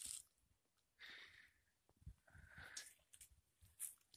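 Near silence, broken by a few faint, brief soft noises.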